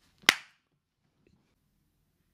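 A single sharp crack of an impact, like a slap or clap, fading quickly.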